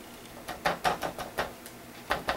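Foam pouncer dabbing paint through a plastic stencil onto a journal page: a run of about seven quick, light taps, roughly five a second.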